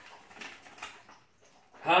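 A few faint soft rustles and clicks from a paper slip held in the hands, then a man's voice begins near the end.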